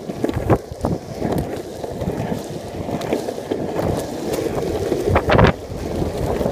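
Longboard wheels rolling over rough asphalt: a steady, uneven rumble with wind buffeting the microphone and several knocks, the loudest about five seconds in.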